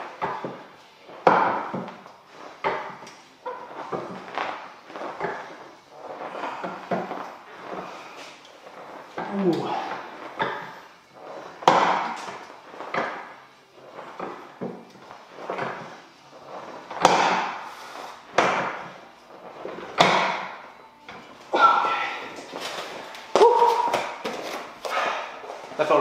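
A person breathing hard and grunting through a set of lifting reps, one forceful exhale every second or two, a few of them voiced.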